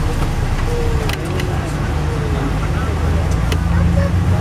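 Inside an MCI D4000 diesel coach under way: a steady low engine and road drone fills the cabin, with a few short clicks during it.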